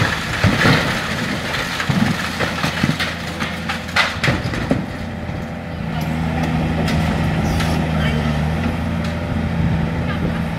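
Volvo demolition excavator's diesel engine running, with crashes and clatter of concrete and masonry falling off the building in the first half. About six seconds in the engine note becomes steadier and louder as the machine works under load.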